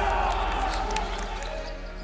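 Basketball game sound from the court: a noisy haze of players' voices and court noise with a few faint knocks, fading away over the two seconds, with a faint low hum underneath.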